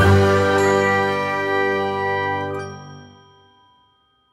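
Closing chord of a short outro music jingle: several notes ringing together, fading away by about three and a half seconds in.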